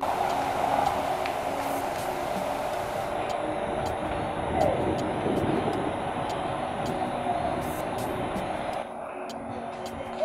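A Mercedes-Benz SUV driving in and pulling up, its engine and tyres a steady noise, over soft background music. The sound drops a step about nine seconds in as the car comes to rest.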